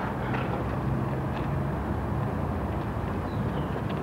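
A steady low rumble of outdoor background noise, with a few faint short sounds over it.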